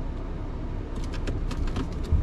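Steady low road-and-drivetrain rumble inside the cabin of a 2018 Bentley Bentayga on the move, with a few faint ticks in the second half.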